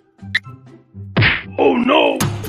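A single loud whack about a second in, followed by a short wavering pitched sound near the end, over low background music.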